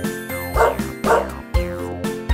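Two short dog barks, about half a second apart, over bouncy children's music with a steady beat.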